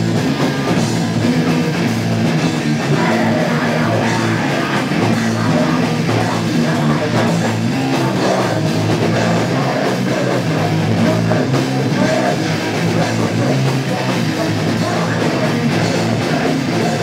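A live rock band playing loudly without a break: electric guitar and drum kit together.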